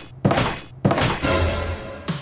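Two sharp thumps about two-thirds of a second apart, each with a short ringing tail, followed by a steady hiss, over background music.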